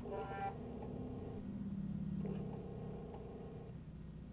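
Faint whir of an Apple 3.5-inch floppy drive spinning and reading the disk during a file extraction: a few steady tones that start and stop at different pitches.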